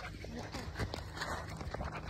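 Faint handling noise from a phone being carried and gripped, fingers rubbing over it with scattered soft clicks and a low rumble, along with footsteps of the person walking.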